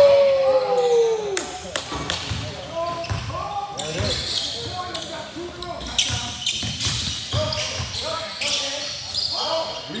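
A basketball bouncing on a hardwood gym floor during play, mixed with players' shouts. A long, loud shout that falls in pitch opens the stretch, and scattered calls follow.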